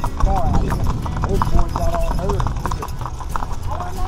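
Mule hooves clip-clopping on a paved road, a steady run of irregular knocks.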